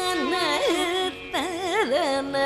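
Female Carnatic vocalist singing a melody with sliding, oscillating gamaka ornaments over a steady drone, with a short break just past the middle.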